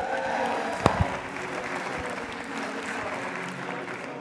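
Theatre audience applauding in answer to a question from the stage, with one sharp click about a second in.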